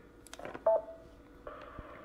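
Ham radio transceiver speaker: a couple of faint clicks as the microphone is unkeyed, then a short electronic beep about two-thirds of a second in. From about one and a half seconds a narrow-band hiss comes up as an incoming transmission opens the squelch.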